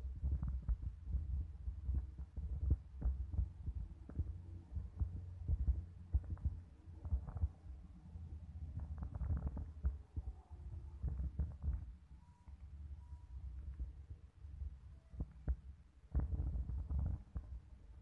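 Low rumbling with irregular soft thumps on a handheld phone's microphone, typical of wind buffeting and handling noise while filming.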